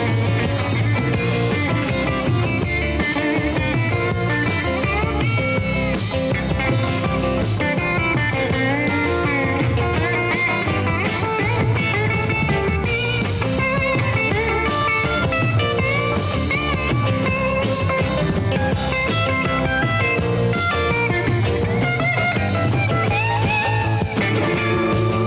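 A live rock band playing an instrumental break: a lead electric guitar, a Fender Stratocaster, plays a solo line full of bent notes over drums and bass guitar.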